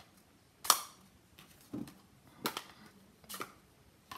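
Plastic Stampin' Pad ink pad cases being flipped open and set down on a tabletop: four short sharp clicks and taps, the first the loudest.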